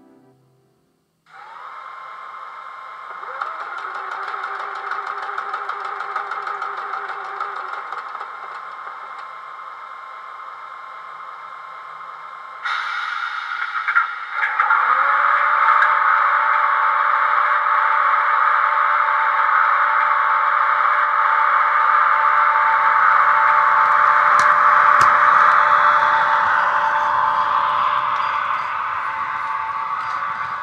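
LokSound 5 sound decoder with Legomanbiffo's sound file in an EFE model Southern Region booster electric locomotive, playing through two upgraded bass-enhanced speakers: a steady electric whine that starts about a second in. It gets louder with a short rising tone about halfway through as the model pulls away, then eases off near the end.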